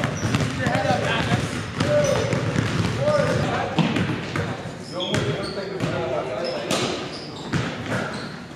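Basketballs bouncing on a gym's hardwood floor: repeated dribbling thuds, with voices and short squeaks echoing through the hall.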